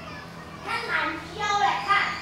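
Children's voices talking and calling out, loudest in the second half.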